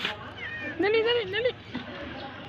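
Cat meowing: one long, wavering meow about a second in, after a shorter call just before it.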